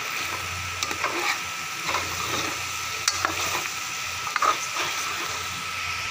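Minced meat and split black gram (urad dal) sizzling in oil in a large aluminium pot while a long metal spoon stirs and scrapes it: a steady sizzle broken by scattered spoon scrapes against the pot. This is the bhuna stage, frying the mixture down after its water has dried off, until the oil separates.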